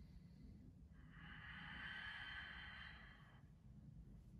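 A person breathing: one long, unpitched audible breath starting about a second in and lasting about two and a half seconds, against near silence.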